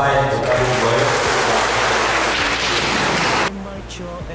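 A congregation applauding: dense, steady clapping that stops abruptly about three and a half seconds in.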